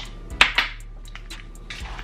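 A single sharp knock about half a second in as a container is set down on the tabletop, followed by a few faint handling taps.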